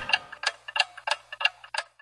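A series of sharp, clock-like ticks, about three a second, with fainter ticks in between.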